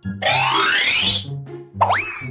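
Cartoon sound effects over upbeat children's background music: a long rising sliding sweep lasting about a second, then a short springy boing near the end.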